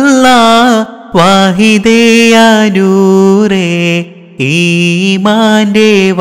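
A single voice singing a Malayalam Islamic devotional song (madh song) in long, ornamented held notes. There are brief breaths about a second in and about four seconds in.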